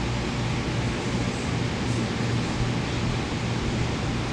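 Steady room noise in a large hall: an even hiss with a constant low hum underneath, unchanging throughout.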